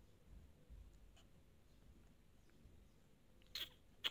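Near silence, with a few faint soft clicks from the keys of a small pocket calculator being pressed. A short hissy burst comes near the end.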